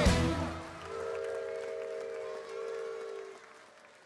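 A live band's gospel-rock song ends on a final hit that rings down. Two long held notes follow over light cheering and applause, and all of it fades out near the end.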